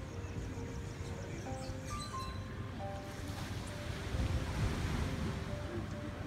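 Outdoor shore noise of wind buffeting the microphone and surf, with soft background music still playing underneath.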